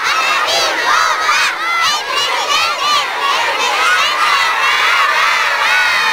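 A crowd of schoolchildren shouting and cheering in high voices, many overlapping yells that merge near the end into one long held shout.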